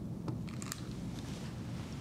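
Low steady room hum with a few faint clicks; the small flame catching on the gasoline vapours makes no clear sound of its own.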